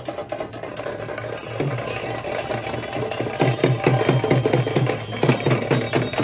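Teenmaar street drumming: rapid, regular drum strikes with clattering higher hits. It is softer for the first second or so, then builds to full strength.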